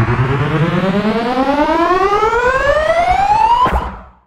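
Synthesized riser sound effect: a buzzy pitched tone gliding steadily upward over a low rumble, cutting off with a quick sweep near the end and fading away.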